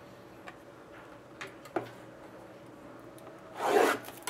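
A few faint taps of cards being handled, then, near the end, a short loud rasping rub from a shrink-wrapped trading-card box as it is handled and its plastic wrap is worked at.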